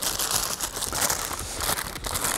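White paper takeaway wrapper being unwrapped by hand, crinkling and rustling throughout with many small crackles.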